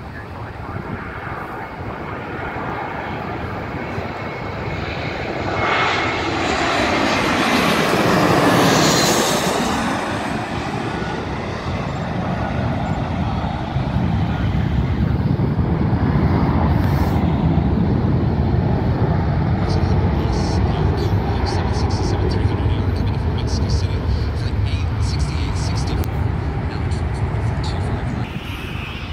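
Twin-engine narrow-body jetliner passing low overhead on final approach: the engine noise swells to its loudest about eight seconds in, with a whine that falls in pitch as it passes, then settles into a steady low rumble as the jet heads away to land.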